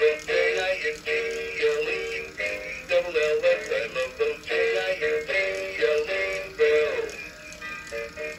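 Gemmy 'Hats Off to Santa' animatronic Santa playing its built-in Christmas song with a singing voice as the figure dances; the song fades out near the end.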